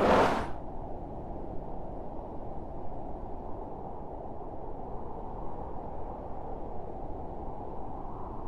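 A short whoosh, then the steady low rumble of an airliner cabin in flight.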